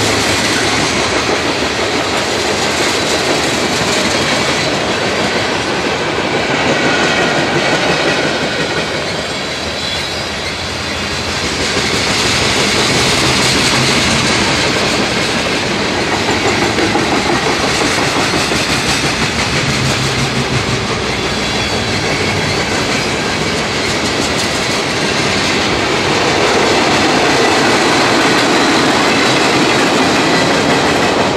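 Freight cars of a mixed freight train rolling past, a steady, loud noise of wheels on rail that dips briefly about ten seconds in.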